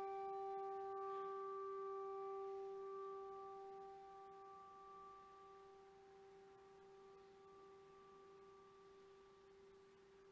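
A bell, struck once just before, rings on with one clear pitched tone and slowly fades away over about ten seconds.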